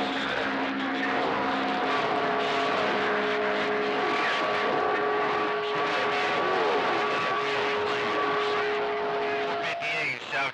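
CB radio receiver, an RCI 2980, picking up strong long-distance skip: a steady wash of static with several steady whistles at different pitches from overlapping carriers coming and going, and faint garbled voices beneath.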